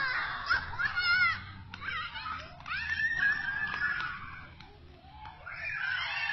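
Young children squealing and shrieking in high voices while playing: several short squeals in the first second or so, then one long held squeal around three seconds in, and more cries building near the end.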